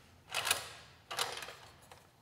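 Two short metallic scrapes, about a second apart, as a hex T-handle turns the mounting bolt of a motorcycle's stock exhaust canister.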